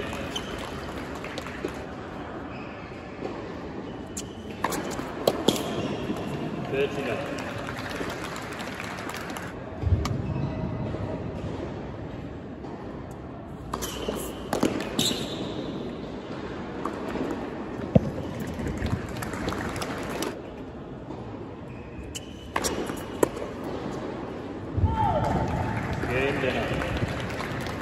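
Tennis ball struck by rackets and bouncing on a hard court, a scattering of sharp hits with hall reverberation, over background voices.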